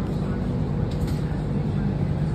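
Steady low hum and rushing air of a large drum fan running, with a couple of faint footfalls on a rubber gym floor about a second in.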